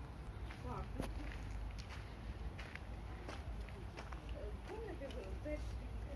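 Faint, indistinct voices of people talking a little way off, with footsteps on pavement and a steady low rumble of outdoor background.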